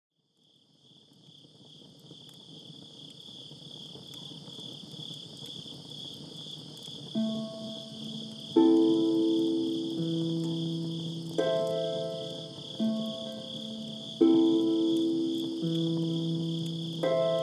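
Crickets chirping in a steady high trill that fades in over the first two seconds. About seven seconds in, slow keyboard chords begin under it, a new chord struck roughly every second and a half, as the lullaby's introduction.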